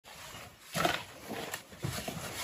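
Several long-handled shovels scraping and scooping through a pile of wet mud mix, with one loud scrape just under a second in and lighter ones near the end.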